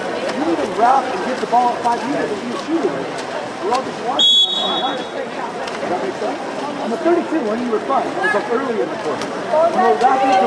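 Many voices of players and spectators shouting and talking over one another at a water polo game, with one short, high referee's whistle blast about four seconds in.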